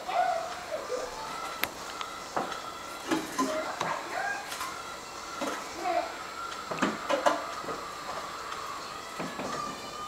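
Faint, indistinct voices murmuring in the room, with a few light clicks scattered through.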